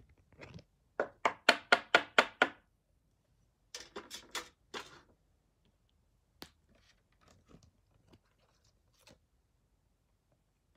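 Pokémon trading cards and clear rigid plastic top loaders being handled: a quick run of about seven sharp strokes at about four a second, then a shorter run of about four, then a single click and a few faint ticks.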